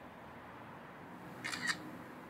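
Smartphone camera shutter sound, a quick double click about one and a half seconds in, over faint room hiss.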